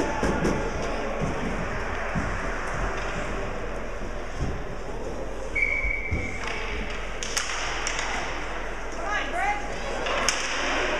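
Indistinct voices echoing around an ice rink during a youth hockey game, with a few sharp knocks, the loudest about seven seconds in.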